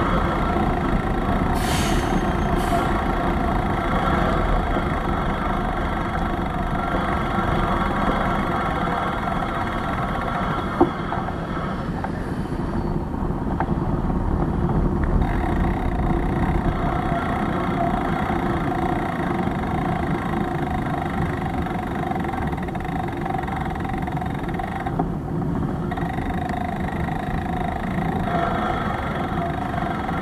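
Steady, loud city street noise with a low rumble, as picked up by a moving bike-mounted camera, with a brief sharp sound about two seconds in and a short click near eleven seconds.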